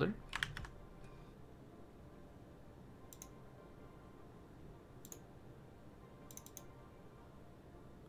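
A few isolated computer keyboard keystrokes, single clicks about 3 and 5 seconds in and a quick cluster of three near 6.5 seconds, over quiet room tone.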